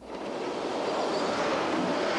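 Diesel railcar of the Circumetnea narrow-gauge railway passing close by: a steady rushing rumble of the train going past, building up over the first half-second.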